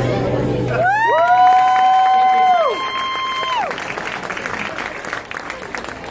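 The last acoustic guitar chord dies away, then two audience members give long held whoops, one higher than the other, each rising, holding for a couple of seconds and dropping off. Clapping and cheering follow as the song ends.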